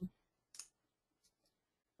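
Near silence, with one faint short click about half a second in and a fainter tick or two later.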